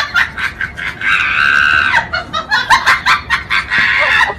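Shrill, cackling human laughter in quick bursts, with a long held shriek about a second in.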